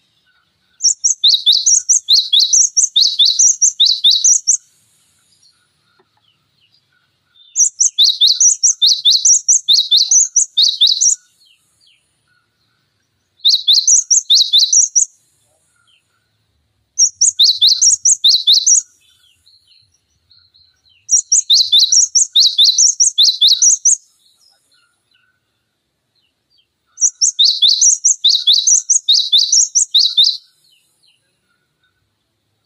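A cinereous tit singing: six bouts of fast, repeated high two-note phrases, each bout lasting two to four seconds, with short silent gaps between them.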